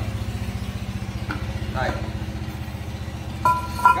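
A small engine idling steadily, a fast, even low pulse. Near the end, a brief steady two-note tone sounds over it for about half a second.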